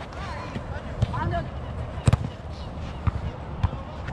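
Football kicked on an artificial-turf pitch: several sharp thuds of the ball being struck, the loudest about two seconds in.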